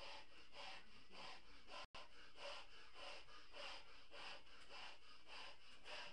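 Quiet rhythmic puffs of breath into a large latex balloon as it is blown up, about two a second. The sound cuts out completely for an instant about two seconds in.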